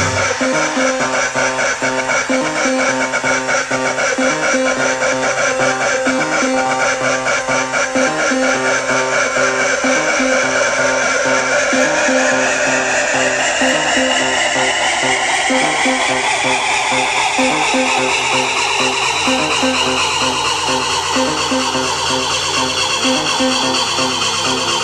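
Electronic dance music played loud over a club sound system. A rising synth sweep climbs in pitch through the second half as a build-up.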